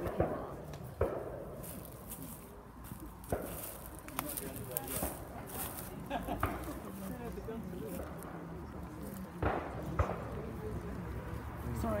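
Indistinct chatter of a small crowd standing around outdoors, with a few sharp knocks and handling clicks near the recorder.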